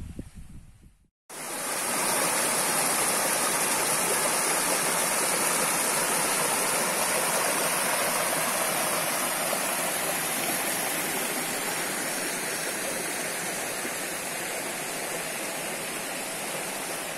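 Shallow rocky stream rushing over stones and a small cascade: a steady rush of water. It cuts in about a second in, after a brief low rumble.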